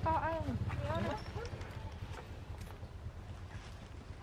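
Macaque giving two short, arching whimpering calls in the first second, each rising and falling in pitch, over a steady low background hum.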